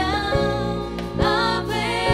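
Live gospel music: a woman's lead voice singing long, bending notes over keyboard chords, with a few light drum strokes.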